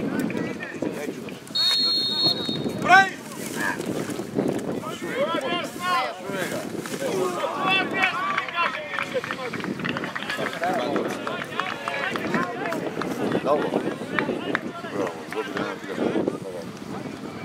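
A referee's whistle blows once for about a second, then a sudden loud shout and a long stretch of excited shouting and cheering from spectators and players as a penalty kick is scored.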